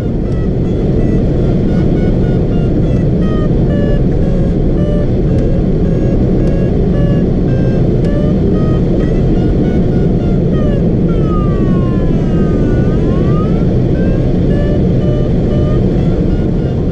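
Air rushing past the canopy of a Schleicher Ka6-CR glider in flight, with an electronic variometer beeping in short tones that step up and down in pitch. About two-thirds of the way through, a longer variometer tone slides down and then back up.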